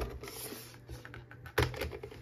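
Light plastic clicks and taps from a paper trimmer's blade cartridge being handled as the blade is changed, with the sharpest click about one and a half seconds in.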